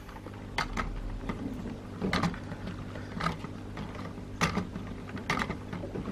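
A Lego carousel model turning: its plastic gear mechanism clicks irregularly, roughly once a second, over a steady low hum.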